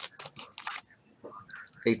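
Plastic card-pack wrapper crinkling and baseball cards being handled by gloved hands, in short scratchy bursts with a brief pause in the middle.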